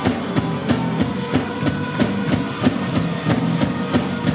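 Live rock band playing: drum kit keeping a steady, driving beat under electric guitar chords.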